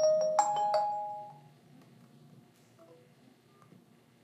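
Smartphone incoming-call ringtone, a few bright chime-like notes that stop about a second in when the call screen is touched. Afterwards only a few faint taps remain.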